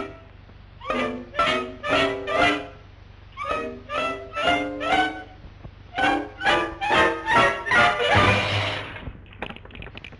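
Orchestral cartoon score playing short staccato chords in phrases of about four, half a second apart, with brief pauses between phrases. A short rush of noise comes about eight seconds in.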